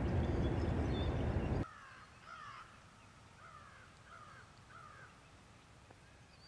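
A loud steady rushing noise cuts off abruptly after about a second and a half. Then, over quiet outdoor ambience, a crow caws about five times, about half a second apart, each caw falling in pitch.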